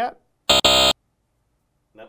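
Game-show wrong-answer buzzer sounding once: a short, loud, steady buzz lasting under half a second with a tiny break just after it starts, signalling a wrong guess.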